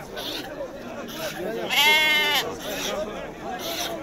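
A sheep bleating once, a single quavering call of under a second about two seconds in, over the murmur of men talking.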